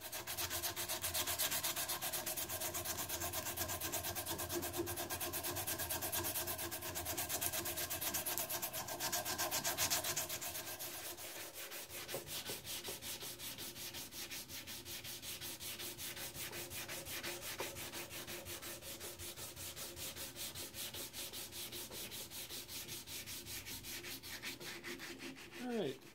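Hand sanding of a wooden walking-stick dowel with sandpaper, in rapid back-and-forth strokes, as the base is tapered down. The sanding is louder for the first ten seconds or so and softer after about 11 s, when folded sandpaper is worked around the tip.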